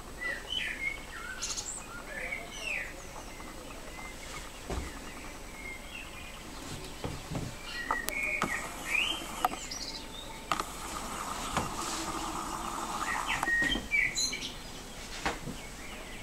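Small birds chirping: short, quick rising and falling calls scattered throughout, with a few sharp clicks in between.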